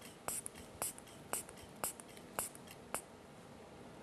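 Rubber hand bulb of an aneroid sphygmomanometer being squeezed to inflate a blood pressure cuff: six short puffs of air, about two a second, stopping about three seconds in.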